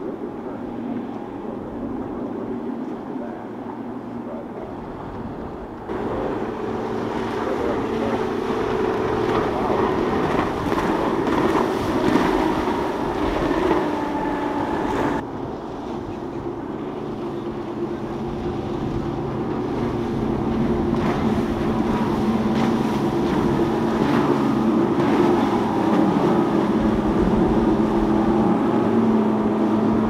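Outboard engines of center-console fishing boats running at speed, a steady drone over the hiss of wake and spray. It jumps louder about six seconds in, drops sharply about halfway, then builds steadily toward the end.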